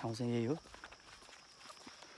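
Footsteps walking on a dirt forest path, soft scattered steps and rustles, after a man's brief held vocal sound of about half a second at the start. A steady thin high-pitched whine runs underneath.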